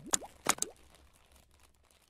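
Title-animation sound effects: a few sharp pops with quick upward pitch glides in the first half-second or so, followed by fainter ticks that fade out.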